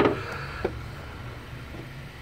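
Low, steady hum of the 1.6-litre Ecotec four-cylinder engine idling, with one light click a little over half a second in.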